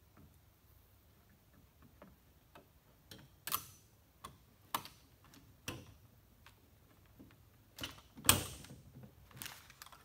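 Scattered metal clicks and knocks of SKS rifle parts being fitted by hand as the trigger group is worked into the wooden stock, with the loudest, sharpest click about eight seconds in.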